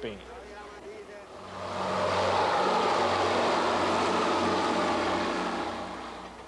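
Diesel railcar passing close by: a steady low engine hum with rumbling noise that swells up about a second and a half in, holds for a few seconds and fades near the end.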